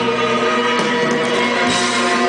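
Live rock band playing loud through a festival PA, heard from the crowd: sustained keyboard and guitar chords held over drum hits.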